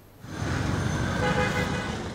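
Steady background noise of a crowded meeting room, coming in about a quarter second in and easing off near the end.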